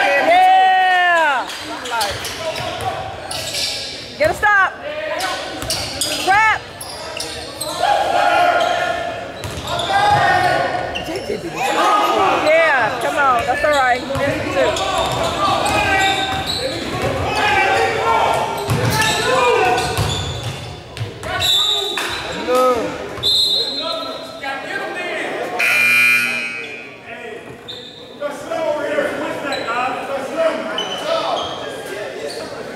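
Live basketball play in an echoing gym: sneakers squeaking on the hardwood court in short rising and falling squeals, the ball bouncing, and voices calling out across the hall.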